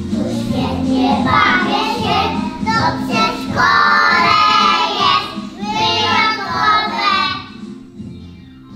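A group of small preschool children singing a song together over a steady musical accompaniment. The singing dies away near the end.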